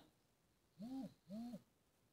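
Two short, faint hooting calls about half a second apart, each rising and then falling in pitch.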